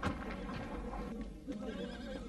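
A horse whinnying, with hoof clops. A sharp knock comes right at the start, and a wavering whinny begins about one and a half seconds in.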